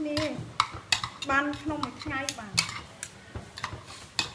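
A metal spoon and fork clinking and scraping against a ceramic bowl while tossing a dressed shredded cabbage and carrot salad, in quick irregular clicks.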